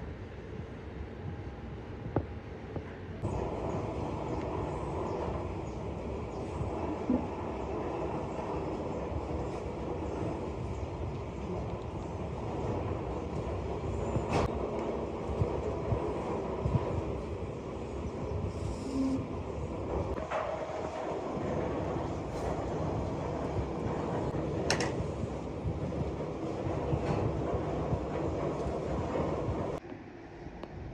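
Steady rumbling workshop noise that gets louder about three seconds in, with a few sharp knocks scattered through it.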